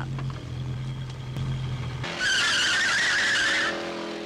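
Movie soundtrack of a car: a low engine hum, then about two seconds in a loud tyre squeal with a wavering high pitch that lasts about a second and a half.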